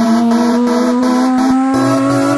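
Electro house music in a build-up: a synth riser with several stacked tones glides slowly upward while the bass is dropped out, and the bass comes back in near the end.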